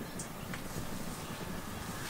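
Steady outdoor background noise: a low rumble with a soft hiss and no distinct events.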